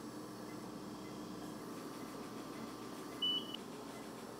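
A single short, high-pitched beep from a bedside patient monitor about three seconds in, over a steady hum of room equipment.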